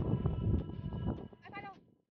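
Wind buffeting the microphone in gusts, with a short wavering cry about a second and a half in, just before the sound drops away.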